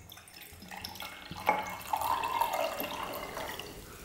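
Water poured from a plastic bottle into a glass jar, a splashing trickle that starts about a second in, runs steadily and tapers off near the end.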